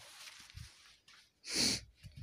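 A short breathy sniff close to the microphone about one and a half seconds in, after a quiet stretch.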